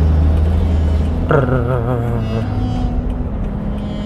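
Steady low drone of a car's engine and tyres heard from inside the cabin, with music playing over it; a singer holds one wavering note from about a second and a half in.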